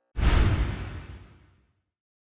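A whoosh-and-hit transition sound effect from video editing: it starts suddenly with a heavy low boom and fades away over about a second and a half.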